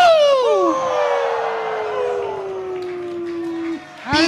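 A man's voice holds one long note through a microphone, sliding slowly down in pitch for nearly four seconds and cutting off just before the end. A second voice swoops quickly downward in the first second.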